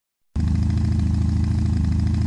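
Motorcycle engine idling steadily at a low, even pulse, cutting in suddenly a moment in.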